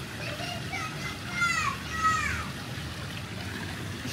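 A young child's faint, high-pitched voice, a few short falling calls or cries, over a steady low background hum of the pool area.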